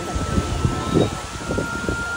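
Wind buffeting the microphone in irregular low rumbles over a steady outdoor background hiss.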